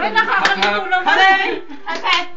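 Several people's voices talking and calling out together, with a sharp hand clap about half a second in.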